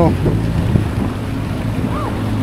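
Steady low rumble of wind buffeting a handheld camera's microphone outdoors.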